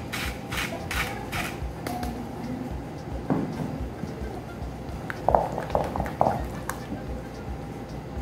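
A wooden spoon stirring a thick batter in a glass bowl. Quick, evenly spaced scraping strokes come near the start, and a few short clinks come between about five and six and a half seconds in.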